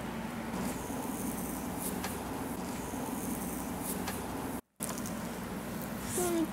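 Steady background hum and hiss with faint slick rubbing of hands massaging a gel-oiled foot and leg. The sound drops out completely for a moment about three quarters of the way through.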